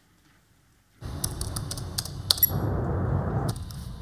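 Silence, then about a second in a played-back walk-on music track starts abruptly with a noisy, clattering intro of scattered sharp clicks and clinks, before the tune proper begins.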